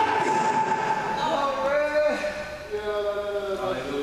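Long held musical notes: a man's voice drawing out chanted, sung tones through a microphone, with sustained keyboard chords holding under them and on after the voice stops.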